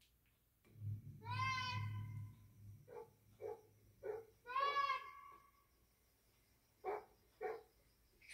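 An animal calling: two long, high, slightly falling calls about three seconds apart, with several short calls between and after them.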